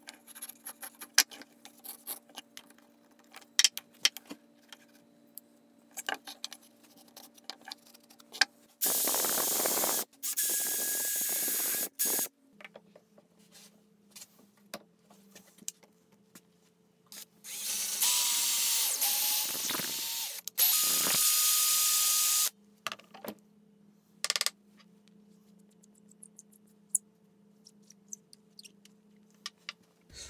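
A power drill run in four bursts of one to two seconds: two in quick succession about nine seconds in, two more about eighteen seconds in, its motor whine changing pitch under load. Between the bursts, light clicks and taps of hand work on wooden parts.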